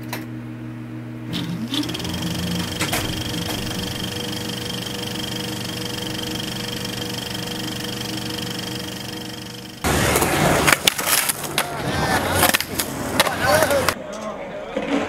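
A steady hum of several held tones with a few clicks for about ten seconds. Then it cuts abruptly to skateboard wheels rolling and clattering in a concrete bowl, with voices in the background.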